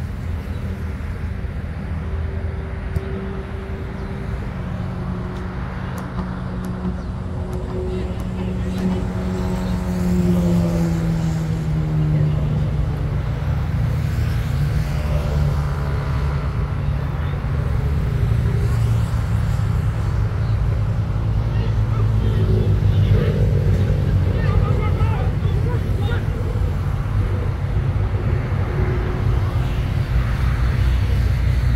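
A motor vehicle's engine running steadily nearby, its pitch dropping about ten seconds in and then holding lower, slightly louder.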